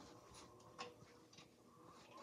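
Near silence, with a few faint clicks from a VHS VCR's tape mechanism as it starts playing a tape.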